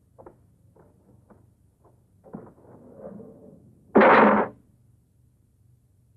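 Footsteps of two people walking at an even pace, about two steps a second, then a loud crash lasting about half a second, about four seconds in.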